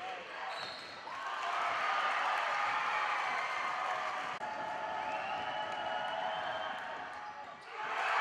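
Game sound from a basketball court: a ball bouncing on the hardwood, sneakers squeaking, and players' and spectators' voices.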